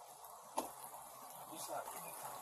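Faint, low-level audio of police traffic-stop footage: an even hiss with a single click about half a second in and faint, distant voices near the end.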